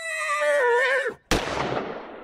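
Sound effects: a horse whinnying, its cry wavering and falling in pitch, then a single gunshot about a second and a half in that rings on and dies away slowly.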